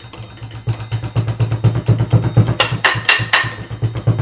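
Percussion ensemble music: a quick, steady low beat. In the second half, metal saucepans are struck with drumsticks in a cluster of four sharp, ringing hits.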